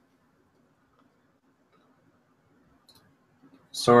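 Near silence with a faint steady hum, a soft click or two near the end, then a voice begins just before the end.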